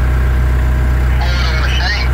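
Engine of a fork-equipped machine idling steadily, heard from inside its cab.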